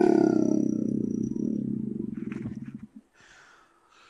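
A man's powerful, deep, gravelly growl in a demonic-voice character, recorded through a computer microphone. It is held long and fades out about three seconds in.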